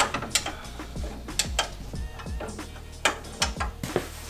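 Scattered sharp metallic clinks and ticks, irregular and a few each second, from hand work with metal hardware and tools at a UTV's front wheel and suspension. Steady background music plays underneath.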